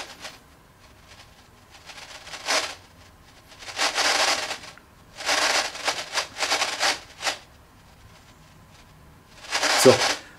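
Ghost box (spirit box) radio sweeping rapidly through AM and FM channels, giving out a few irregular bursts of static hiss separated by quieter gaps. Each burst marks the sweep passing a frequency where it receives something; the box's filter turns what would be a broadcast into noise.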